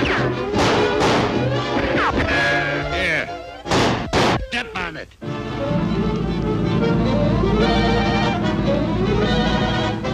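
Orchestral cartoon score playing busily, broken about three and a half seconds in by a quick run of sharp crash and whack hits. The music then carries on with held notes.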